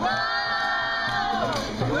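A group of young voices singing together, holding one long note for about a second and a half before it falls away, then starting a new note near the end. A djembe hand drum keeps a beat underneath.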